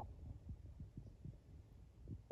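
Near silence, with a few faint, short low thumps.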